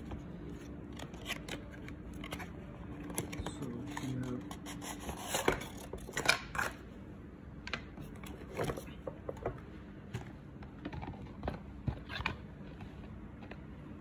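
Watch packaging being handled and unwrapped: a box slid out of its cardboard sleeve and a plastic wrapper crinkled and pulled away. It comes as scattered rustles, crinkles and small clicks.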